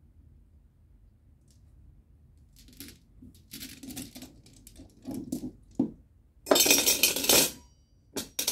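Small stone runes clicking and clattering together as they are handled and gathered on a cloth. Scattered light clicks begin a few seconds in, and a loud, dense clatter lasting about a second comes near the end.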